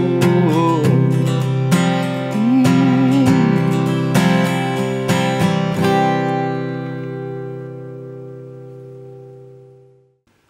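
Acoustic guitar strummed through the song's closing chords, Am and G to a final C; about six seconds in the last strum is left to ring and slowly dies away.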